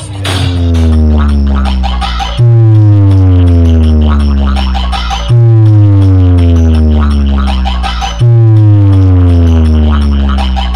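Large DJ sound-box speaker stack playing electronic music at a speaker check, very loud. Long deep bass notes each slide slowly down in pitch and restart sharply four times, about three seconds apart.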